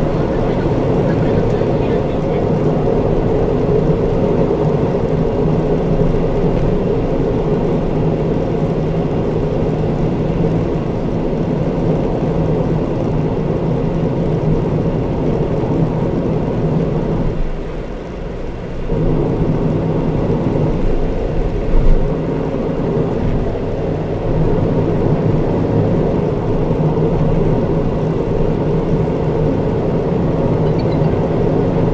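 Steady road noise of a car cruising on an expressway: a loud, even drone of tyres on asphalt with a low engine hum. The noise dips briefly a little past halfway, and a short louder bump comes a few seconds later.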